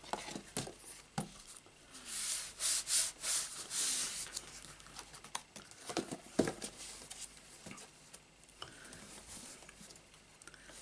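Hands handling a cardstock box: a few light knocks of card on the work surface near the start and again about six seconds in, with card sliding and rubbing against card and hands in between.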